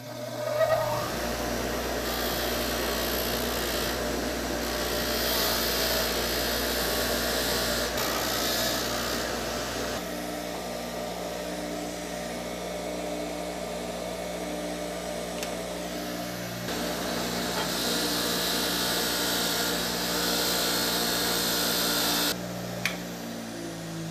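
Baldor bench grinder running, a rusty steel hammer head held against its wire-brush wheel to scrub off the rust. A scratchy hiss of wire on steel comes in two long stretches over the steady motor hum, with a quieter spell of motor alone between them, and stops shortly before the end.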